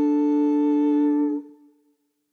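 A single steady pitched note, sounded just before the a cappella singing begins, which gives the starting pitch. It holds without wavering and stops about a second and a half in, with a short fading tail.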